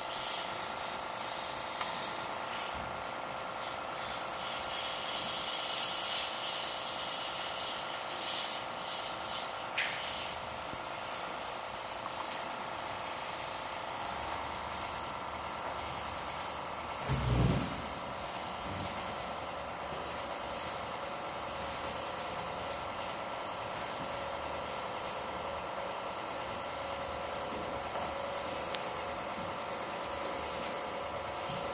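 Steady mechanical hum with a hiss over it, with a single sharp click about ten seconds in and a short low thump a little past halfway.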